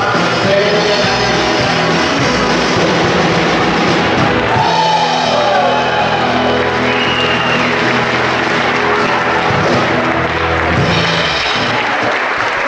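Live country band playing loud amplified music on electric guitars, bass guitar and drums, with sustained chords.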